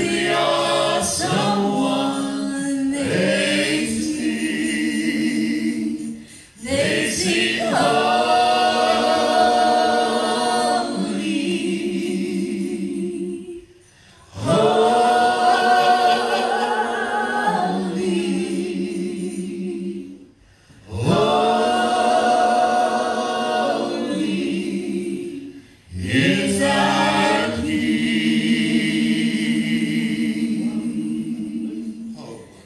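Church worship singing by a group of voices, long held phrases about six seconds each, separated by brief pauses for breath.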